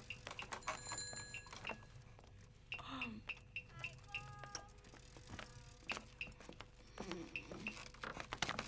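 Faint, scattered pops and crackles of distant firecrackers, with short high chirps in between.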